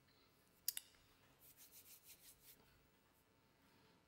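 Near silence in a small room, broken by a sharp double click just under a second in and then about a second of soft, repeated rubbing sounds from hands moving and clasping together.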